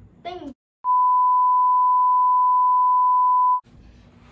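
A steady 1 kHz censor bleep lasting nearly three seconds, dubbed in over muted audio to hide a spoken name. The sound cuts to silence just before the tone starts.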